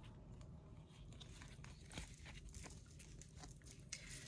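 Near silence with the faint, scattered ticks and rustles of oracle cards being handled in the hands, one slightly clearer tick about two seconds in and another just before the end.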